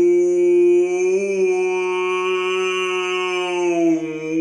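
A man's voice imitating a whale call: one long, drawn-out held note with a slight rise in pitch about a second in and a dip near the end.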